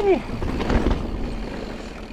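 Forbidden Dreadnought full-suspension mountain bike riding down a rocky dirt singletrack: tyres rolling over stones and dirt, with scattered rattling clicks from the bike, and wind rushing over the chest-mounted camera's microphone.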